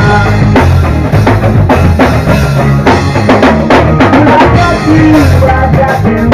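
Live rock band playing: drum kit, bass and electric guitar, with the drums to the fore.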